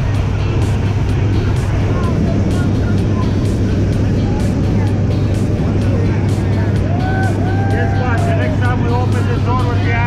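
Steady, loud drone of a jump plane's propeller engine heard inside the cabin, with a constant rush of air noise, during the climb to jump altitude. Voices can be heard faintly over it near the end.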